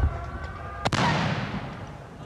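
Ceremonial artillery gun salute: as a military brass band's last chord cuts off with a low boom, a single sharp cannon shot cracks about a second in and rolls away in a long echo.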